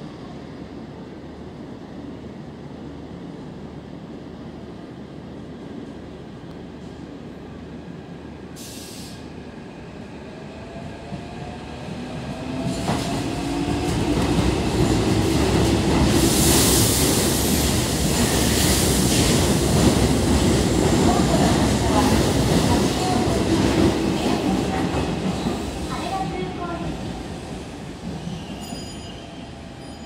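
A red Keikyu electric train moving along the platform, wheels rumbling on the rails under a whine that rises and falls in pitch. It builds from about twelve seconds in, is loudest through the middle, and fades near the end.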